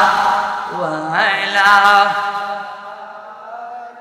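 A man's voice chanting a melodic, drawn-out phrase into a microphone, holding long wavering notes. A new phrase starts about a second in, and the voice fades to a quieter tail in the second half.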